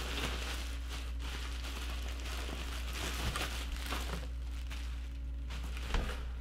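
Plastic bubble wrap rustling and crinkling as it is handled and pulled away by hand, a steady run of small crackles.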